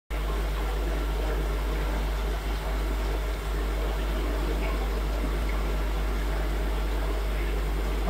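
Aerated rotifer culture tank: a steady rush of bubbling water over a constant low hum.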